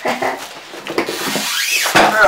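Clear plastic wrapping rustling and crinkling as it is handled and pulled off a large block of watercolour paper, louder and hissier in the second half.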